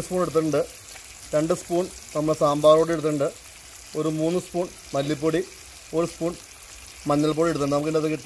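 A man talking in short phrases over the faint sizzle of chopped vegetables frying in oil in a wide pan.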